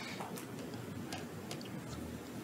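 Quiet room tone with a few faint, irregularly spaced light clicks or ticks.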